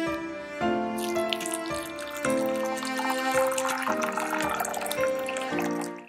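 Hot tea poured into a glass teacup: a splashing trickle from about a second in until near the end, over slow cello and piano music.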